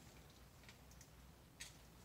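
Near silence: room tone, with a few faint clicks, the loudest about one and a half seconds in.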